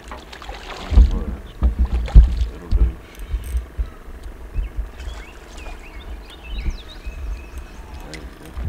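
Dull low knocks and bumps on a small fishing boat, loudest a little after a second in and again around two seconds in. Birds chirp faintly in the background later on.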